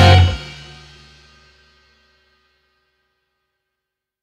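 A rock band's closing chord, with guitar and cymbals, cuts off about a quarter second in. Its ringing tail fades away over the next second and a half.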